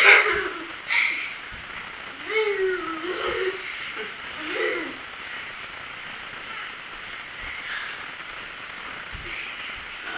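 A few short, wordless hooting vocal sounds that slide up and down in pitch, between about two and five seconds in, over a quiet room. A few faint low thuds of feet stepping back into reverse lunges are scattered through it.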